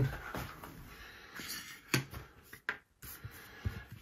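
Quiet room tone with a few faint clicks and knocks of handling at a tabletop gaming board, the sharpest about two seconds in.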